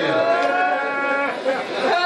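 A man chanting a recitation into a microphone, holding each phrase on a long, steady note: one drawn-out phrase, a short break, then another beginning near the end.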